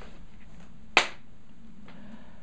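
A single sharp tap about a second in, as a pointer stick meets a paper map hung on a wall, over quiet room tone.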